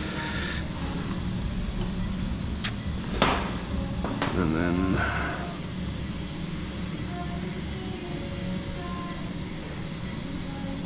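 Steady operating-theatre background hum with a few sharp metallic clicks of surgical instruments being handled, the loudest a little over three seconds in.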